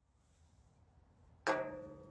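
A single pitched musical note sounding suddenly about one and a half seconds in and ringing as it fades, after near silence.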